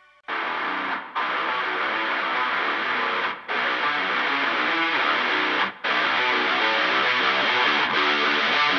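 Metal song intro: a distorted electric guitar strumming a riff, starting a moment in and cutting out briefly three times at roughly even intervals.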